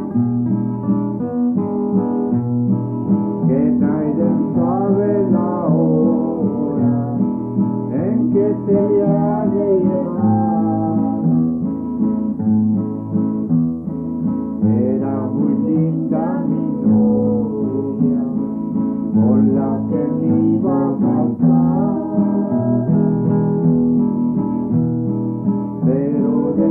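Acoustic guitar strumming chords beneath a man and a woman singing a Hispanic folk ballad. The singing comes in phrases with short gaps, and the guitar carries on through them.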